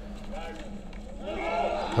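Faint, muffled voices in the background, growing louder toward the end, over a low steady hum.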